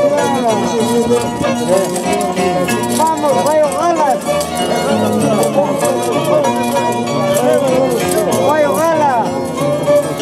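Andean harp and violin playing a traditional melody together. The violin's melody line slides and arches over the harp's steady plucked notes.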